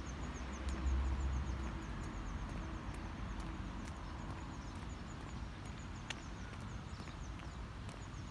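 Outdoor ambience with a small bird calling in a rapid run of short, high chirps, several a second; the chirping stops about three seconds in and starts again near the end. A low wind rumble on the microphone comes early on, and a few faint clicks are scattered through.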